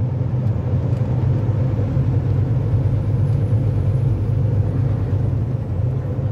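Steady low drone of road and engine noise inside a car's cabin while driving on a freeway, even throughout with a faint steady hum.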